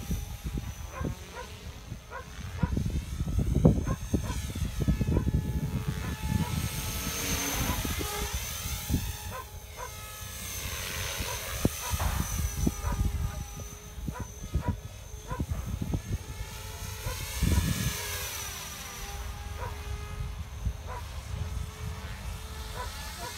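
Blade Fusion 360 electric RC helicopter in flight overhead: a steady high whine from its motor and rotor, swelling and fading several times as it moves around the sky. Gusts of wind rumble on the microphone.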